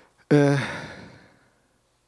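A man's voiced sigh close to the microphone, starting suddenly about a third of a second in and falling in pitch as it fades over about a second.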